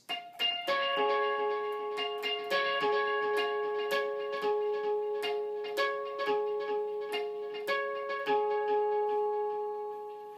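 Electric guitar playing natural harmonics at the 7th fret on the D, G and B strings, picked one string at a time in a repeating pattern. Each pure note rings on under the next.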